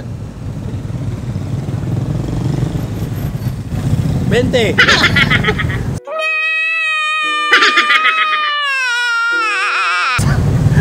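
Street traffic hum under a short spoken word. About six seconds in, this cuts abruptly to a comic insert: a long, high, wavering wail, broken by short sobbing bursts, that slides down in pitch near the end.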